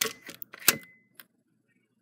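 Several sharp plastic clicks and taps from a hand working a game console's casing, about four in the first second, the loudest just past the middle of that run, with a faint thin high tone beneath them, then near silence.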